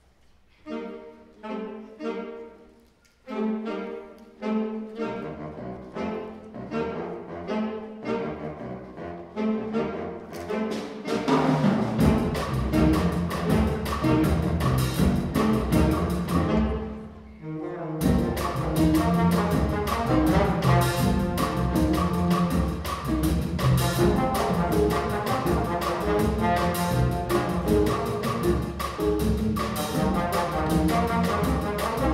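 Student jazz big band opening a tune: short horn notes and chords that build up, then the drums and full band come in about twelve seconds in. After a brief break near seventeen seconds, the whole band plays on with saxes, trombones and trumpets.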